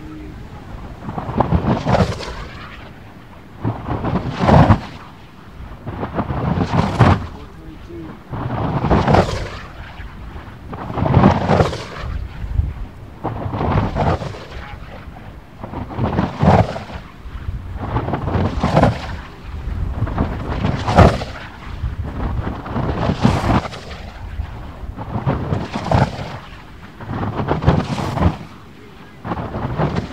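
A 100-inch Kinetic RC glider dynamic soaring, its airframe roaring through the air as it passes on each loop, about every two and a quarter seconds. Each pass builds to a sharp peak and falls away, about thirteen times in a row.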